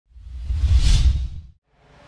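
Swoosh transition sound effect with a low rumble beneath a high hiss, swelling and fading over about a second and a half, then a brief silence.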